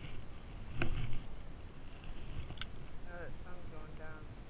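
Fishing rod and spinning reel being handled close to the microphone: a few sharp clicks and a louder thump about a second in, over a low rumble.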